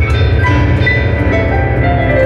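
Fast, loud piano music played on an electronic keyboard: dense, rapid runs of notes in the middle and upper range over a heavy, sustained bass.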